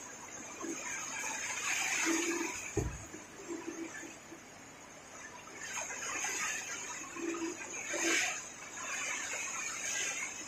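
Heavy typhoon rain and wind, the noise swelling and easing in gusts, with a single dull thump about three seconds in.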